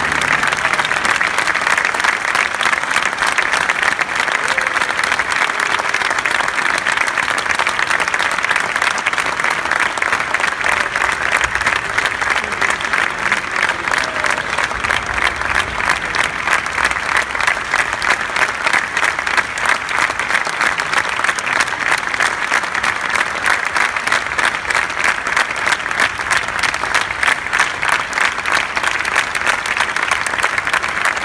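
A large theatre audience applauding: dense, sustained clapping from many hands that holds steady throughout.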